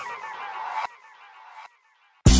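Electronic sound effect in a song intro: a rapid, stuttering warble that slides down in pitch and fades. It cuts off a little under a second in and leaves a faint tail that dies away before the end.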